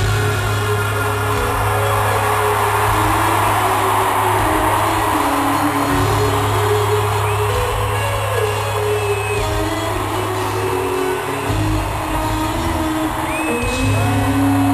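Live rock band playing in an arena, heard from the stands, with held low notes and the crowd cheering over the music.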